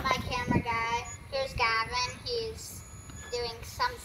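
A child singing in several short phrases of high, held notes that bend in pitch.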